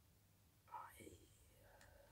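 Near silence: room tone, with a faint breathy vocal sound from the speaker about a second in.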